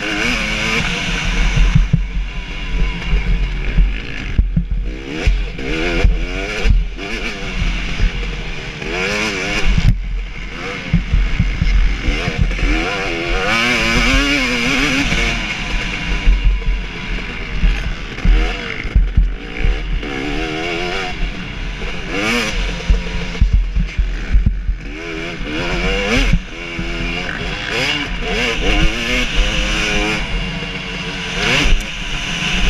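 A 2017 KTM 250 SX two-stroke motocross engine at race pace, revving up in pitch and dropping back again and again as it is ridden through the gears and the throttle is opened and closed. A low wind rumble on the microphone runs underneath.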